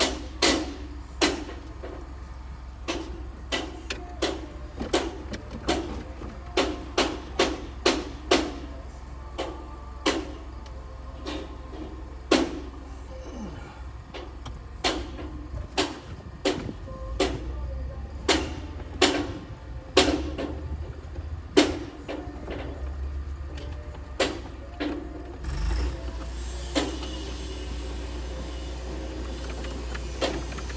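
Irregular clicks and knocks of plastic dash trim being worked by hand in a pickup's cab, about one or two a second, over a low steady hum. About 26 s in, a broader rushing noise joins them.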